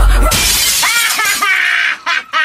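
The hip-hop track's beat stops abruptly and a loud noisy crash, like something shattering, follows and lasts about a second and a half, with a voice sweeping up and down in pitch over it near the middle.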